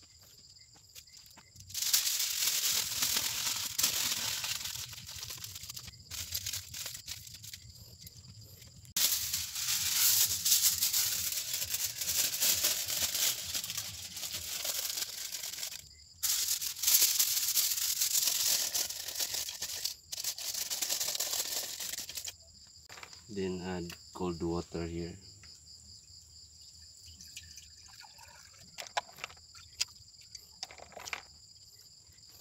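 Aluminium foil crinkling and rustling in three long bursts as it is wrapped and pressed around a glass distillation flask and condenser. A person's voice sounds briefly about two-thirds of the way through.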